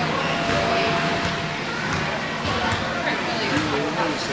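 Indistinct voices of several people talking at once around the table, with no clear words.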